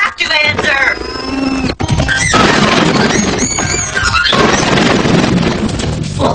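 Cartoon soundtrack: a brief voice, then a held high tone that ends in a sharp click, then a loud, steady rush of noise from a sound effect for the rest of the time.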